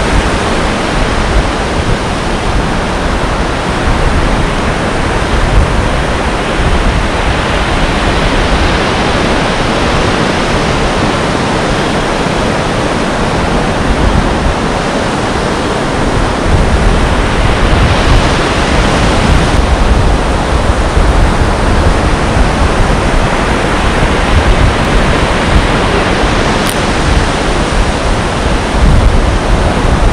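Loud, steady roar of breaking surf mixed with wind on the microphone.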